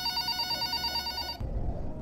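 A telephone ringing with a steady electronic tone as a call is placed. It cuts off about one and a half seconds in.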